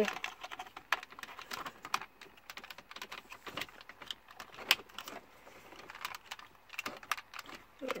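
Irregular light plastic clicks and rattles as wiring-harness connectors are handled and clipped onto the back of a Mercedes-Benz GL450's A/C control unit, with one sharper click a little under five seconds in.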